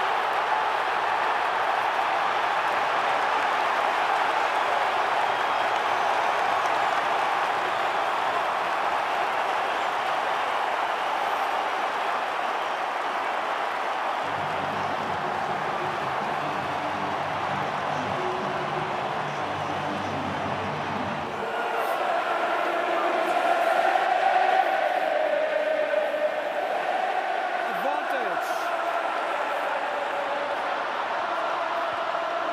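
Large stadium crowd cheering without a break, growing louder about two-thirds of the way through as massed voices join in a chant.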